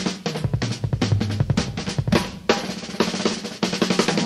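Drum kit break in a 1973 jazz-funk television theme: rapid snare and bass-drum hits and fills, with low bass notes underneath.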